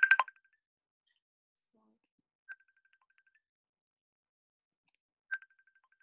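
Mobile phone ringing with an incoming call: a loud trill of rapid electronic beeps at the very start, then two faint short beeps, each trailing off in quick repeats, about two and a half and five seconds in.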